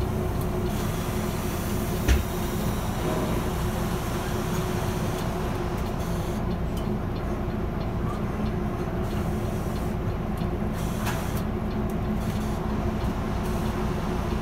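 Volvo bus under way: a steady drone of engine and road noise with a constant low hum, and one short thump about two seconds in.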